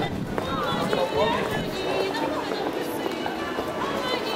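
A woman singing while she plucks a bandura, its many strings ringing under her voice.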